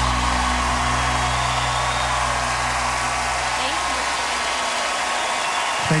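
A large audience applauding steadily, while the song's last low note fades out underneath over the first few seconds.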